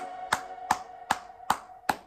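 One person clapping slowly and steadily, about five single claps at roughly two and a half a second, over a faint lingering musical note.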